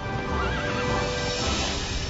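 A horse whinnying once, a short wavering call in the first second, over steady background music.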